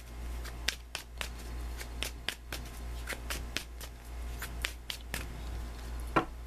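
A deck of Thelema Tarot cards being shuffled by hand: a run of quick, irregular card clicks and slaps, two or three a second, over a low steady hum.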